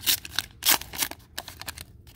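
Foil wrapper of a 1991 Upper Deck baseball card pack being torn open and pulled back from the cards: a quick run of irregular crinkles and crackles, with two louder rips in the first second.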